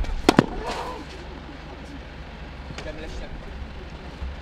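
Tennis ball struck hard with a racket right at the start, followed about a third of a second later by two sharp knocks in quick succession, then a brief voice. A steady low rumble runs underneath.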